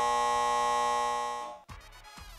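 Game-show buzzer sounding one steady electronic tone to signal that time is up, fading out about one and a half seconds in.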